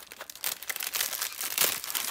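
Thin clear plastic packaging bag crinkling in the hands as it is opened and its contents are slid out: an irregular run of crackles.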